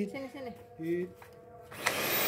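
Deerma corded stick vacuum cleaner switching on near the end: its motor starts suddenly with a steady rushing noise and a high whine rising in pitch.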